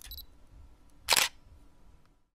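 Camera shutter click sound effect, one sharp loud click just over a second in, over a faint low rumble.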